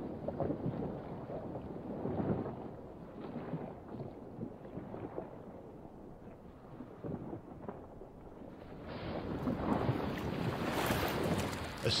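Wind on the microphone and open water at an ice edge, low and uneven at first, swelling into a louder rush about nine seconds in.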